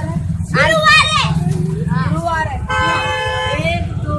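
Boys shouting and yelling in high voices, with a long steady high tone held for about a second near the three-second mark. A low rumble runs underneath.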